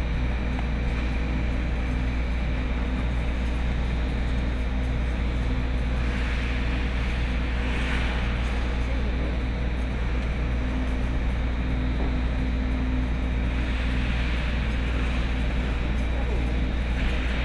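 A steady low hum runs throughout, with a steady mid-pitched tone over it. Figure skate blades scrape the ice in two hissing stretches, one about six seconds in and another near the end.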